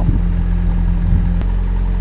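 Narrowboat's engine running steadily under way, a low even drone, with one sharp click about one and a half seconds in.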